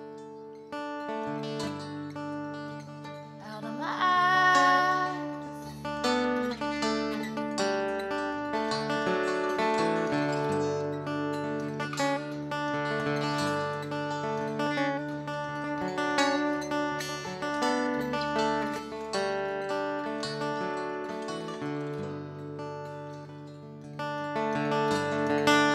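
Instrumental break in a live acoustic duo: banjo picking over a strummed resonator guitar, with no singing.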